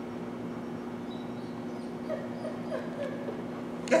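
Dog whining softly in several short, high calls in the second half, over a steady low hum.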